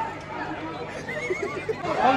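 People's voices and chatter, with a short high, wavering vocal sound about a second in.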